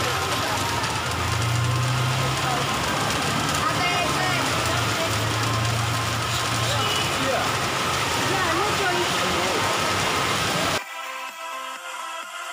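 Steady rain hiss with several women talking and laughing close by. Near the end it cuts off abruptly and electronic background music takes over.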